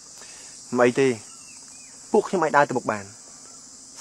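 A steady, high-pitched insect chorus runs throughout, under two short stretches of a man's speech.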